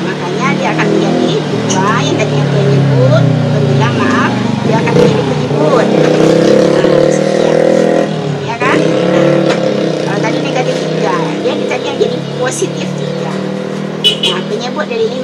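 A motor vehicle engine running, its pitch drifting up and down and loudest in the middle, with a short break about eight seconds in. Voices are heard faintly over it.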